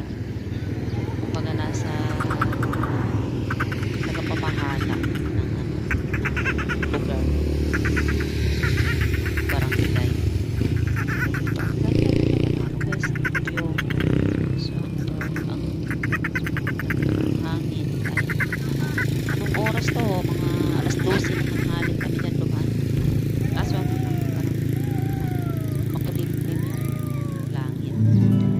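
Indistinct voices of people talking, off and on, over a steady low rumble.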